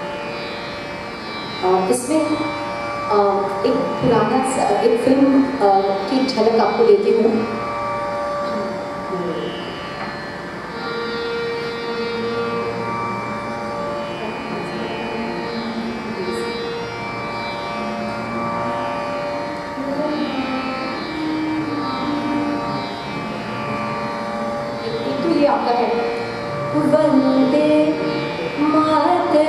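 Harmonium holding sustained notes while a woman sings Hindustani classical vocal phrases over it, busiest in the first seconds and again near the end, with a quieter stretch of mostly harmonium between.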